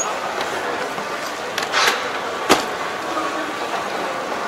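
Cab door of a Yanmar combine harvester being shut: a brief rustle, then one sharp latch click about two and a half seconds in, over steady background noise.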